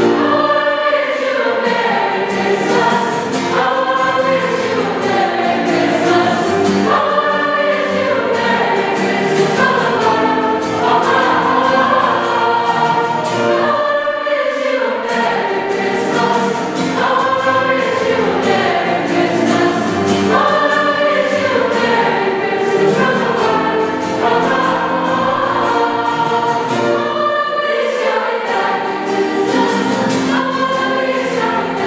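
Youth chamber choir of mixed voices singing continuously in parts.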